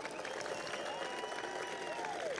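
Outdoor crowd applauding, with a few voices calling out over the clapping.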